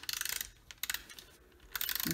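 Adhesive tape runner clicking in a quick ratcheting run, once at the start and again near the end, as it lays down adhesive.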